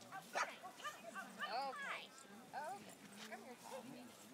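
Small dog barking repeatedly as it runs an agility course, a quick string of barks in the first two seconds and more later on.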